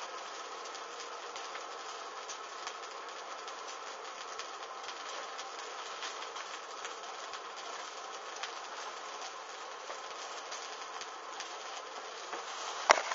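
A burning bra, its fabric cups on fire: a steady hiss of flame with faint, scattered crackles.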